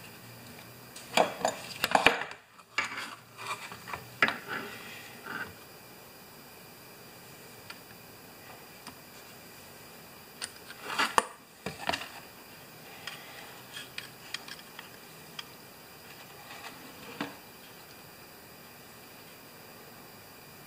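Metal locking pliers and a hard plastic mower guard clinking and clattering as they are handled and clamped on a workbench. The sound comes in a few short bursts of clicks, then scattered light ticks.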